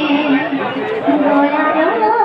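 A woman's voice through a loudspeaker, speaking in a chant-like way with drawn-out notes, over crowd chatter.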